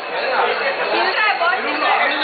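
Overlapping voices of a group of people talking and calling out at once: chatter with no single clear speaker.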